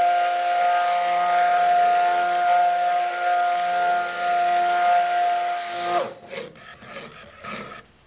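Handheld stick blender running steadily with a high, even motor whine, its head submerged in hot-process soap batter of oils and lye solution, blending it to trace; the motor cuts off suddenly about six seconds in.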